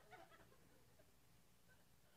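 Near silence: room tone, with a faint, brief voice from off the microphone in the first half-second.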